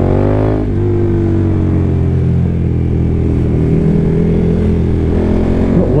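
KTM motorcycle engine under throttle: the revs climb for under a second, then drop back and settle into a steady note that sags slowly, heard with road and wind noise on a helmet microphone.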